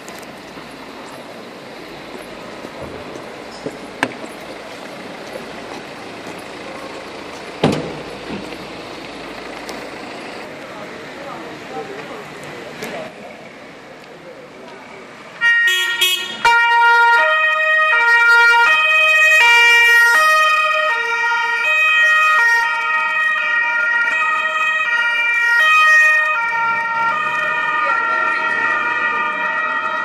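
Police car sirens, loud and overlapping, switching between two notes, start suddenly about halfway through as the cars pull out. Before that, outdoor street noise with a few sharp knocks.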